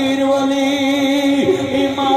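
A man's voice chanting a mournful Punjabi verse into a microphone, holding one long note that bends near the end.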